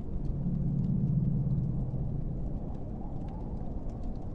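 Low rumbling ambience with a low hum that swells in about half a second in and fades out after a couple of seconds, over faint scattered crackles.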